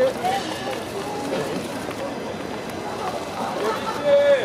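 Voices calling out in short bursts over steady outdoor street noise.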